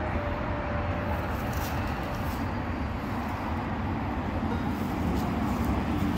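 Steady low rumbling outdoor background noise, with a few faint rustles of footsteps through dry fallen leaves and grass.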